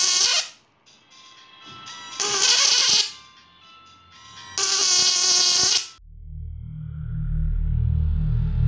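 A homemade 12 V-to-1200 V fish-shocking inverter's high-voltage leads arcing in three loud buzzing bursts, each about a second long, with quiet gaps between. About six seconds in, bass-heavy electronic intro music comes in and grows louder.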